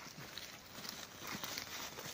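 Footsteps of several people on a dry dirt path with brush rustling, a steady soft crunch with scattered small clicks.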